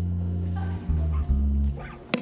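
Live worship band music: deep bass notes held under faint higher instrument notes, the bass changing pitch twice and dropping away near the end.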